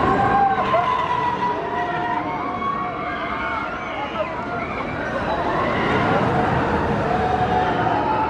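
Riders screaming on a giant swinging pendulum ride: many overlapping long yells that waver up and down in pitch, easing off in the middle and swelling again as the gondola swings back up.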